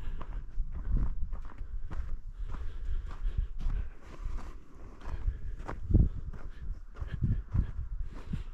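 Footsteps of a person walking on a snow-covered path, with a steady low rumble on the microphone and a louder low thump about three quarters of the way through.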